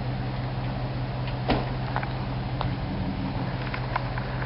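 A truck engine running steadily with a low drone. A few faint knocks and scrapes come about halfway through.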